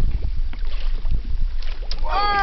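Wind buffeting the microphone in a steady, gusty rumble, with water sloshing and splashing at the surface where a nurse shark moves beside the boat's hull.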